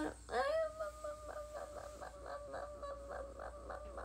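A young woman's voice held on one steady pitch for several seconds, a sing-song 'ara ara ara' pulsing about four times a second.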